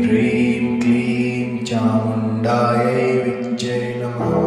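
A voice chanting a Kali mantra, repeating syllables in a steady rhythm about one every second, over a sustained drone.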